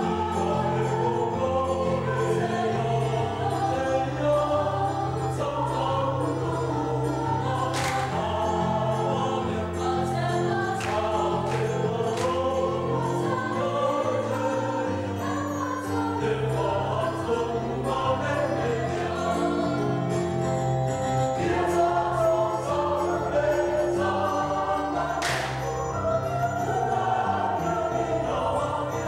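A mixed youth choir of young men and women singing a hymn in parts over a steady accompaniment, with a few brief sharp percussive strikes.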